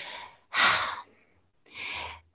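A person breathing audibly in a pause in speech: a strong sighing breath about half a second in, then a softer breath near the end, just before speaking again.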